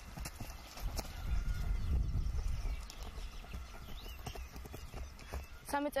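Footsteps of several people running on grass, with irregular thuds and light knocks over a low rumble that is loudest from about one to two and a half seconds in.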